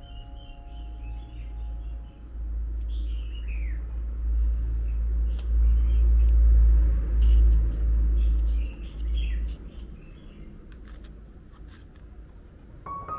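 Small birds chirping, short high falling calls scattered throughout, over a deep rumble that swells in the middle and dies away about ten seconds in.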